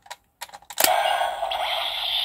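Light plastic clicks from a Gaburichanger transformation-toy gauntlet as its dinosaur-head jaw is pushed shut over the loaded battery, ending in a sharper snap about a second in. The toy's small speaker then plays a steady electronic sound effect.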